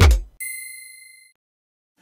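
The last sung note of a short intro jingle cuts off, then a single bright bell ding rings out and fades over about a second.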